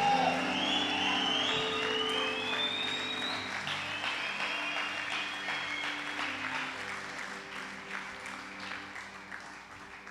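Church congregation applauding over sustained keyboard chords; the applause dies away gradually.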